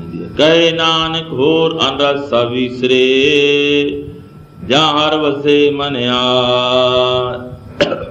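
A man chanting a verse in a melodic, sing-song voice with long held notes: two phrases, the second starting about halfway through after a short break.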